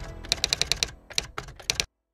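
Computer keyboard typing sound effect: about a dozen quick, irregular keystroke clicks that stop abruptly near the end, over background music fading out.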